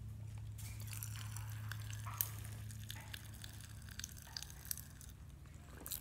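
Faint crackling of Pop Rocks candy popping inside a closed mouth: scattered tiny clicks, over a steady low hum.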